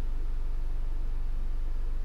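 Steady low electrical hum with a faint hiss beneath it, unchanging throughout; no other sound stands out.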